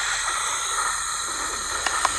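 Steady white-noise hiss given out by a robot cat as a sleep sound. It starts abruptly and holds at an even level.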